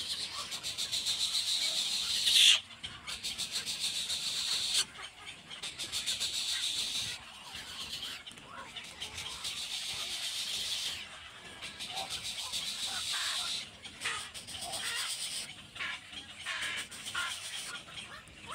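Egret chicks in the nest giving rapid, ticking begging calls in repeated bouts of two or three seconds, each stopping abruptly, with short pauses between; the loudest bout comes about two and a half seconds in.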